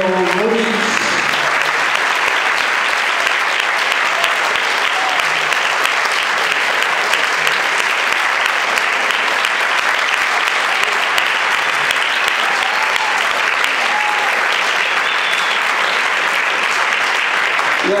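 An audience applauding steadily, many hands clapping at once.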